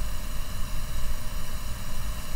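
Steady low rumble with an even hiss behind it: the background noise of the recording during a pause in the narration.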